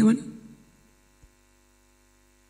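A man's voice ends a spoken phrase and trails off, followed by a pause holding only a faint steady hum, with one small click about a second in.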